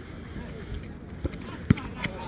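A basketball bouncing on an outdoor hard court: two sharp bounces in the second half, the second louder, over faint players' voices.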